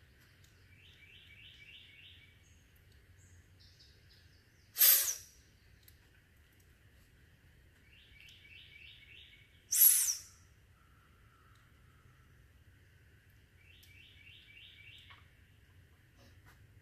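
A songbird sings a short phrase of four or five quick notes three times, over a steady high background drone. Twice, about five seconds apart, there is a loud brief swish as the hammock's fabric is handled.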